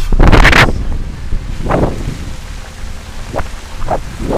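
Wind buffeting a camera microphone held on a pole out of a moving car's window: a loud blast at the start and a smaller gust about two seconds in, over a steady low rumble.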